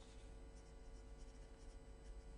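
Faint scratching of a pen writing on paper, in short irregular strokes, over a steady low hum.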